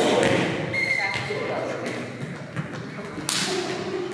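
Indoor volleyball rally: players' shouts and calls, a short steady high squeak about a second in, and one sharp smack of the volleyball a little after three seconds, echoing around the hard-walled gym.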